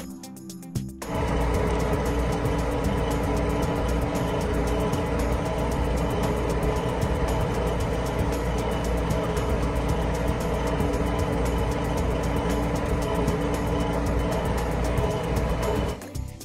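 A tractor engine running steadily, starting about a second in, under background music.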